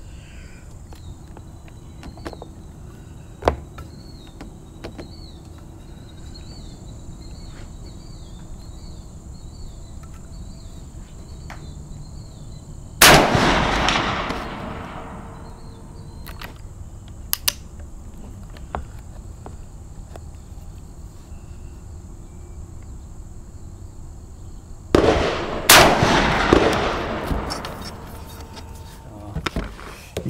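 Two shots from a .444 Marlin lever-action rifle, about twelve seconds apart, each followed by a rolling echo that fades over a couple of seconds. A few light clicks fall between the shots, and insects chirp faintly in the background.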